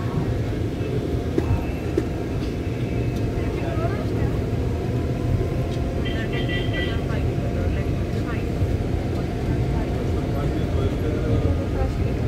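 Steady road and engine rumble of a moving vehicle, heard from inside it.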